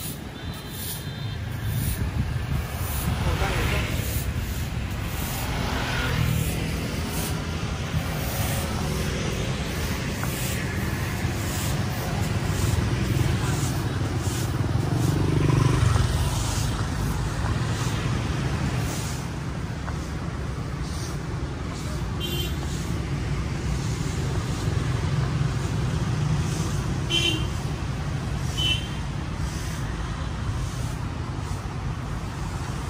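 Street traffic of motorbikes and cars passing: a steady low rumble with louder pass-bys about four and fifteen seconds in, and a few short high-pitched sounds near the end.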